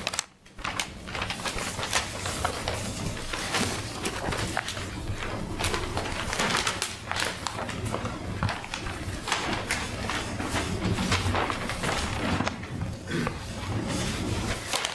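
Sheets of paper rustling and being handled, giving an irregular run of crinkles and small clicks.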